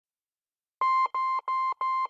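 Four short electronic beeps of the same steady pitch in quick succession, about three a second, starting nearly a second in after silence.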